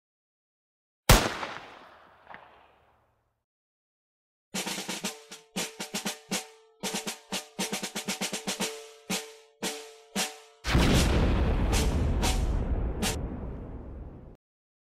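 Cartoon sound effects: a single sharp bang about a second in that dies away, then after a pause a rapid, uneven drum roll of snare-like hits over a ringing tone. About ten and a half seconds in comes a loud, deep, noisy blast that lasts about three seconds and fades.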